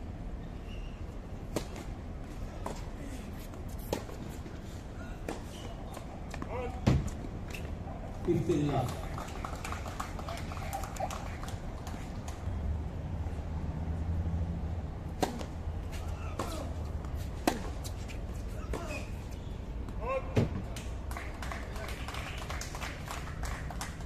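Tennis ball struck by rackets during points on an outdoor hard court: single sharp hits a couple of seconds apart, with short bits of voice in between over a low background hum.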